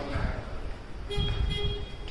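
Footsteps and phone-handling thumps while someone climbs stone stairs. About halfway through, a short steady horn-like tone sounds for under a second.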